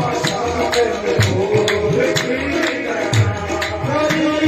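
Live qawwali music: tabla and hand-clapping keep a steady beat of about two strokes a second under a sustained melody.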